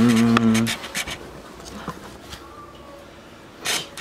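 A man's voice singing a held, level 'da' that stops under a second in, followed by quieter handheld-camera rustle with a few faint clicks and a short noisy burst near the end.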